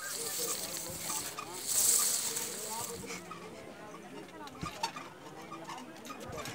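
Child bouncing on a trampoline mat, with a few soft knocks from the jumping, faint distant voices and a brief burst of hiss about two seconds in.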